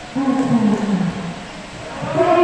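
A man's voice letting out one drawn-out shout that falls in pitch and fades after about a second, in a large hall.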